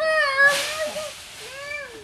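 A young child's high-pitched, wordless vocalizing, like a squeal or whine: one long wavering call in the first second, then a shorter one near the end.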